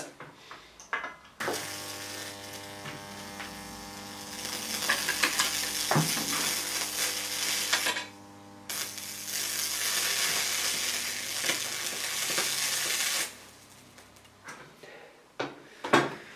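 High-voltage electric arc at a 2 kV Jacob's ladder, buzzing with a steady mains hum and a sizzling hiss. It cuts out briefly about halfway through, resumes, and stops near the end. The arc stays stuck at the narrow gap at the bottom instead of climbing, which the uploader puts down to the wires being too close for the hot air to push it up.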